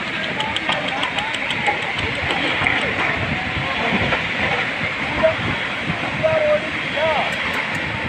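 Faint, scattered voices of onlookers over a steady rushing noise.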